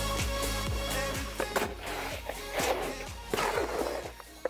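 Background music with a steady beat that drops away about a second and a half in, giving way to the scraping and churning of a hoe working wet concrete mix in a plastic mixing tub.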